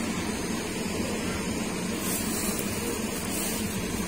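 A steady low drone from a running machine, with a brief high hiss about halfway through.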